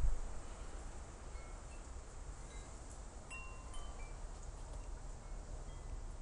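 Faint, scattered chiming tones, a few short notes at different pitches, over a steady low rumble of wind on the microphone.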